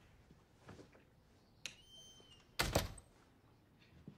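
A door opening: a sharp latch click, a brief high squeak, then a heavier thud about a second later.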